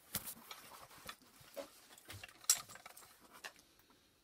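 Faint rustling and small irregular clicks, with one sharper click about two and a half seconds in.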